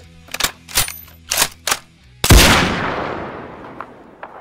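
A few sharp separate clicks, then one loud bang like a gunshot a little past halfway, its echo dying away slowly over the following seconds.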